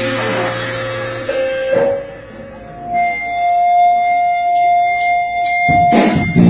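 Live Christian band between phrases of a song: a sustained chord fades out about a second in, and after a short lull a single steady note is held from about three seconds in. The full band comes back in with low notes right at the end.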